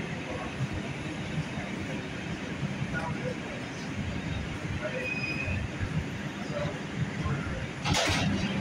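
New York City subway train running, a steady low rumble heard from inside the car.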